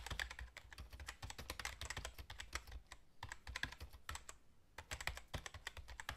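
Fast typing on a computer keyboard: a quick, irregular run of key clicks with a couple of short pauses.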